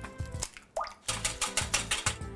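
An egg dropping into a glass bowl of liquid with a single plop a little under a second in, then a wire whisk beating rapidly against the glass bowl.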